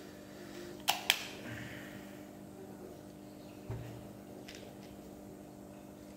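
Two quick, sharp plastic clicks from a handheld milk frother's handle and whisk wand being fitted together about a second in, followed later by a soft low knock of handling; the frother is not running, as no battery has been fitted yet.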